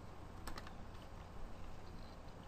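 A computer mouse button clicked once, a quick press-and-release pair of clicks about half a second in, over faint room noise.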